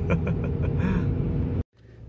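Steady engine and road noise heard from inside a moving pickup truck's cab, cut off suddenly near the end.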